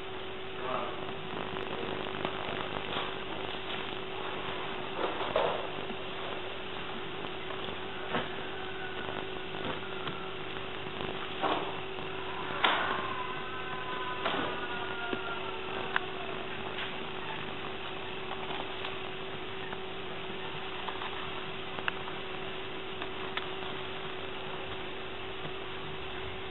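Steady electrical hum and hiss on an old camcorder recording, with a few scattered knocks and clicks and some faint short whistles about halfway through.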